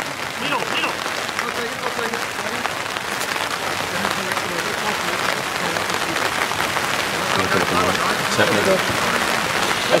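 Steady rain, a dense even hiss flecked with fine drop ticks, pattering on the canopy overhead.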